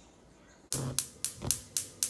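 Gas cooktop burner's electronic spark igniter clicking, a rapid run of sharp ticks about four a second, starting under a second in as the burner is lit.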